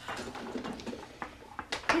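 Light clicks and rustles of kitchen items being handled at a counter: a coffee maker and its pot being readied. Faint voices are also present.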